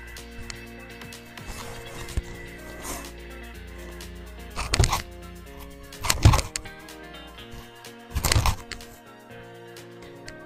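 Background music throughout. Around the middle, a seven-iron strikes a golf ball off a simulator hitting mat, among three loud sudden bursts near 5, 6 and 8 seconds in; the loudest is just after 6 seconds.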